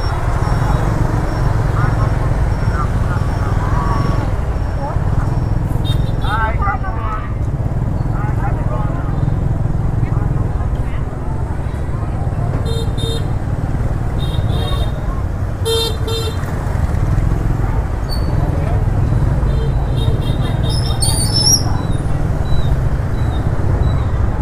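Busy street-market ambience: motorbike engines running past with a steady rumble, voices of people around the stalls, and several short motorbike horn toots in the second half.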